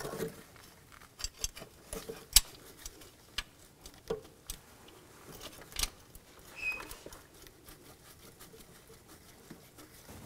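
Light clicks and taps of gloved hands handling metal and plastic engine-bay parts while starting the air pump bracket bolts by hand. They come thickest in the first six seconds, with one sharper knock about two seconds in and a short squeak a little after halfway.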